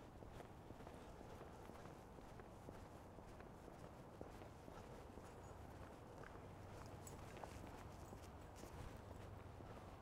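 Faint footsteps of a person walking on a sidewalk, over a low steady background hum.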